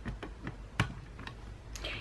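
Plastic punch heads on a We R Memory Keepers Planner Punch Board clicking as they are slid and set in the board's slots: a handful of light clicks, the loudest a little under a second in.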